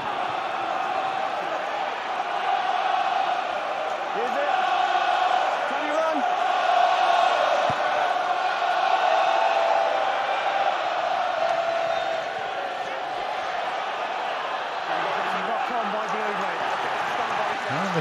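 Large stadium crowd of rugby supporters chanting and cheering together, a dense mass of many voices that swells a few seconds in, is loudest around the middle and eases slightly toward the end.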